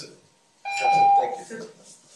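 A single electronic beep: one steady, fairly loud tone lasting about half a second, starting just over half a second in, with a voice heard alongside it.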